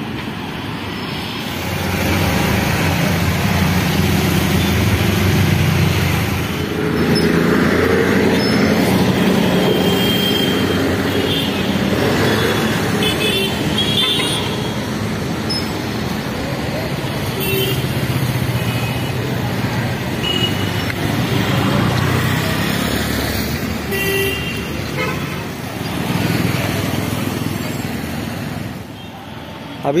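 Road traffic passing close by: engines of auto-rickshaws, motor scooters and cars, loudest in the first third, with several short horn toots.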